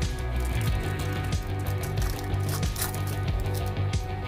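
Background music with a steady bass line, over the crinkle and tear of a foil trading-card pack wrapper being ripped open by hand. The crackling is thickest a little past halfway.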